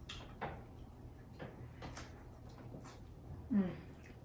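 Faint clicks and mouth sounds of people eating a soft, creamy candy off spoons, with a brief "mm" about three and a half seconds in.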